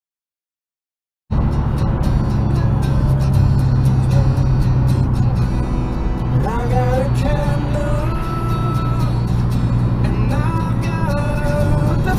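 Silent for about a second, then music starts suddenly from the car's radio, playing in the cabin over a steady low drone of road noise. A melody of sliding tones comes in about halfway through.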